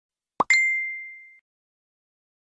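Sound effect for an animated Like button: a quick pop rising in pitch, then a single bright ding that rings out and fades over about a second.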